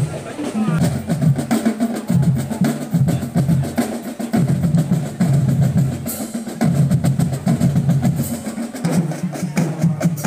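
Marching drum band playing a steady rhythm on snare and bass drums, with low notes moving in steps underneath.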